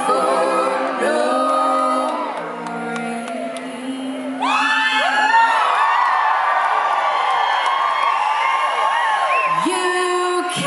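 Live acoustic band music with voices singing in harmony. About four seconds in, the audience breaks into many overlapping whoops and cheers that go on over the music until the singing returns near the end.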